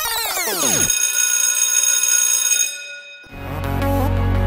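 Electronic intro music: a sweep of many tones gliding down in pitch, then a held high chord that fades away, and a new music track with a deep bass beginning a little after three seconds in.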